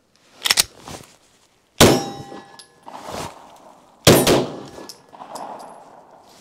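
Two gunshots about two seconds apart at a shooting range, the first followed by a ringing clang of a hit steel target plate. A softer double click comes just before them.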